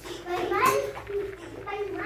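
A young child talking in a high voice.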